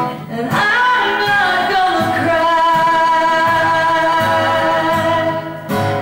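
A woman singing one long held note over strummed acoustic guitar, with a strum at the start and another near the end.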